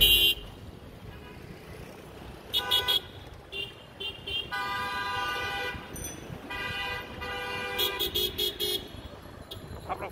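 Vehicle horns honking in busy street traffic: a few short toots about three seconds in, two longer blasts in the middle, and a rapid run of beeps near the end, over a steady traffic noise.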